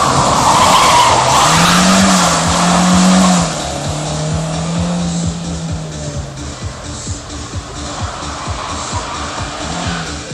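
A VAZ-2113 hatchback's four-cylinder engine revving hard, with tyres squealing as the car slides through a slalom turn close by. The engine note climbs, dips briefly and climbs again, then about three and a half seconds in the squeal stops and the engine drops to a lower, fading note as the car pulls away.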